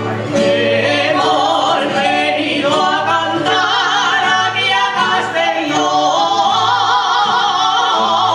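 Aragonese jota performed live: a singer's voice with strong vibrato over a rondalla of plucked guitars and bandurrias.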